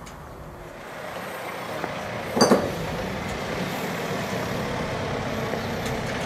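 Forklift engine running, growing louder over the first couple of seconds and then steady, with one short sharp sound about two and a half seconds in.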